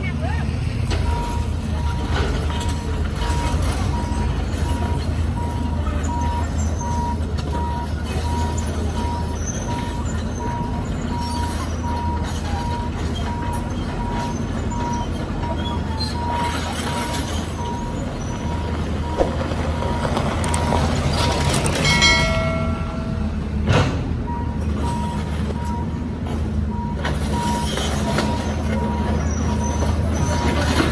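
Caterpillar 320C excavator's diesel engine running with a steady repeated beeping alarm, typical of a travel alarm as the machine tracks, amid passing traffic. A vehicle horn sounds once for about a second and a half roughly three-quarters of the way through.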